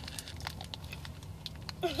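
Plastic candy wrapper crinkling in the hands as a marshmallow Peep is bitten, a few scattered crackles over a low steady hum. A voice breaks in near the end.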